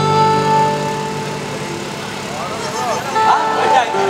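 An amplified acoustic guitar chord rings out. About halfway through, a man's voice comes in over the PA with a winding, wavering vocal run.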